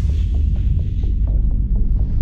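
Deep, steady low drone of a title-card sound effect, with faint quick ticking over it.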